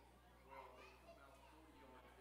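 Faint, indistinct background chatter of several voices over a steady low hum.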